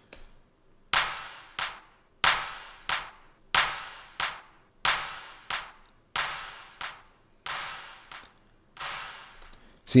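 Sampled hand clap from a software sampler repeating in a steady rhythm, about one and a half claps a second, each trailed by reverb. The claps grow quieter and more washed in reverb as the dry level is pulled down while the pre-fader reverb send stays full, so the clap sounds as if it is moving away down a hallway.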